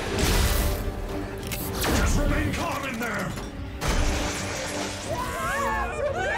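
Cartoon action sound effects of a lurching elevator car, with mechanical rattling and loud crashing jolts about a quarter second, two seconds and nearly four seconds in, over dramatic background music.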